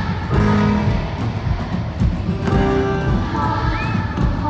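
Live band music with guitar over a steady beat, played loud in a large arena.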